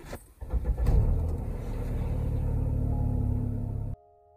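Car engine starting about half a second in and then running at a steady idle, a low rumble that cuts off suddenly at the end. Faint piano notes come in near the end.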